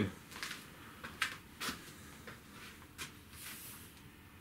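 A few faint, irregular footsteps on a hard floor, with light knocks from handling the rod and line.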